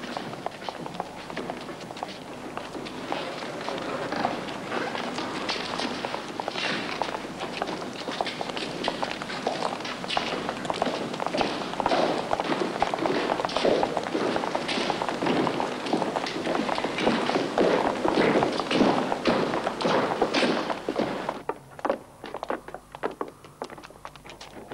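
Many hurried footsteps, boots thudding and clattering on a stone courtyard, a dense irregular run of knocks that dies away suddenly near the end.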